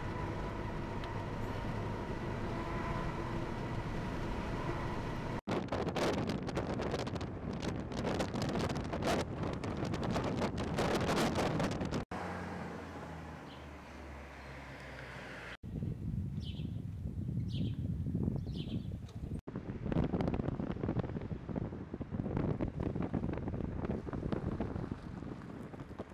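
Outdoor field sound cut between several shots: wind rushing on the microphone and vehicle noise. Three short high chirps sound in the middle.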